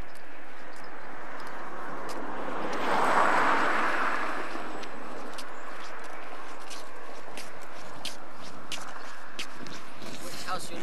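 A vehicle passing on the road: its rushing tyre noise swells about three seconds in and fades over the next two seconds. Underneath are steady outdoor noise and faint footsteps on the pavement.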